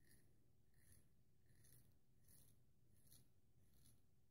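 A Haddon Brand full hollow ground straight razor cutting neck stubble through lather: six short, faint scratching strokes, about one every 0.7 seconds.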